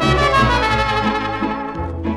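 Mariachi trumpets playing an instrumental phrase between the sung verses of a ranchera, with the rest of the mariachi band behind them; the phrase opens with a strong attack.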